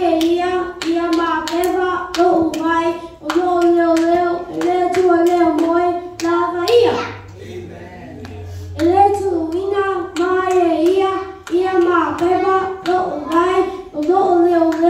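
A young boy's voice through a microphone, reciting in a steady, chant-like rhythm, with a short break about halfway through.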